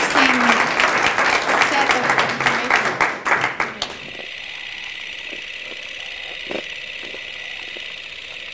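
Audience applauding, with a few voices, cut off suddenly about four seconds in. A steady high-pitched hum follows.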